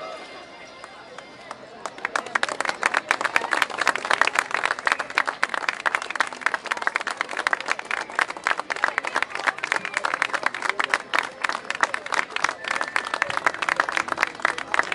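Low crowd murmur, then a crowd breaks into applause about two seconds in: dense, steady hand-clapping that keeps going.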